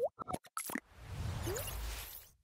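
Sound effects of an animated logo sting: a quick run of clicks and pops, led by a rising 'plop', then a low whoosh building from about a second in.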